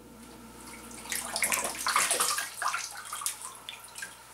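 Hands scooping water from a plastic tub and splashing it onto a face: irregular splashes start about a second in and tail off into drips near the end.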